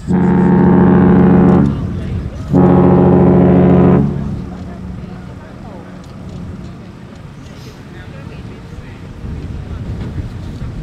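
Allure of the Seas' ship's horn sounding two loud, steady blasts, each about a second and a half long, with a short gap between them.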